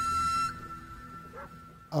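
Background music: a flute holds one high note that breaks off about half a second in, leaving only faint background sound.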